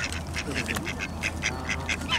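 Waterfowl calling: a rapid string of short, high calls, several a second, from the swans' cygnets and nearby ducks, over a steady low hum.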